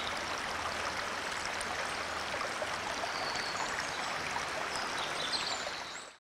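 A forest stream flowing steadily, with a few short high bird chirps over the water. It fades out near the end.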